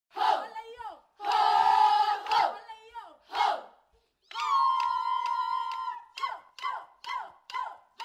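A girls' choir chanting a traditional Marakwet folk song: loud group shouts and a held chord, then one long high held note over sharp, evenly spaced clicks. Short falling calls follow about twice a second near the end.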